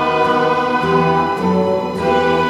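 A church congregation singing a hymn together with instrumental accompaniment, in sustained notes with the chords changing about every half second.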